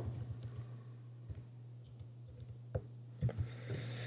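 A few separate computer-keyboard key clicks, spread out over a couple of seconds as a word is typed, over a faint steady low hum.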